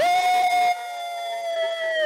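A voice holding one long, loud high "oh" note on a steady pitch, which sags and falls away near the end.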